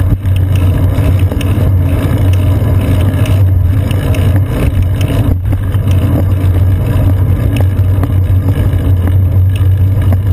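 Steady low rumble of wind and road vibration picked up by a GoPro Hero 2 mounted on a bicycle's seat post while riding in city traffic, with a strong low hum and scattered small knocks.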